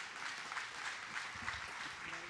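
Congregation applauding, a steady patter of many hands clapping.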